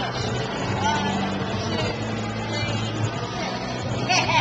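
Large drum fan running with a steady low hum, with children's and adults' voices over it.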